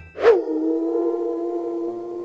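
Wolf howl sound effect: a short hit about a quarter second in, then one long howl that dips slightly at first and holds steady.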